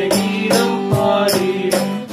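Two male voices singing a Tamil song over a strummed acoustic guitar, with cajon and shaker-type percussion keeping a steady beat of about two and a half strokes a second.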